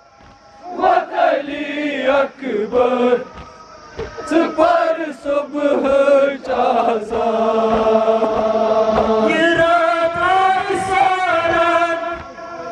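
Kashmiri noha, a Shia mourning lament for Muharram, chanted by male reciters into microphones, with a crowd of men chanting along. Short, evenly repeated thumps of chest-beating (matam) run under the chanting.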